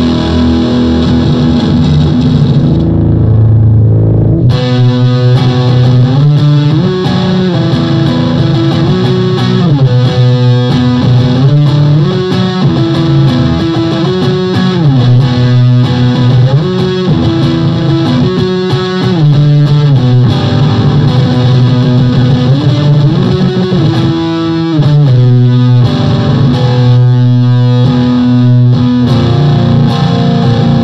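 Electric guitar played through a Blackstar HT-20R MkII valve amp head and HT-212VOC MkII vertical 2x12 cabinet. A held chord rings and fades over the first few seconds, then an indie-style riff starts, repeating in phrases about two seconds long.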